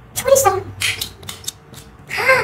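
A short wordless vocal sound, then several quick snipping clicks from a plastic dinosaur grabber toy as its scissor-linkage arm extends and its jaws snap.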